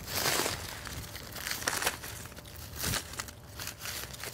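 Dry corn husks and leaves on a dried corn stalk crinkling and crackling as they are handled around the ear, an uneven run of papery rustles with a few sharper crackles.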